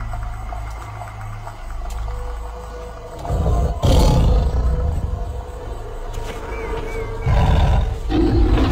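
A big cat's roar, deep and rumbling, over dramatic music, swelling louder about three seconds in and again near the end.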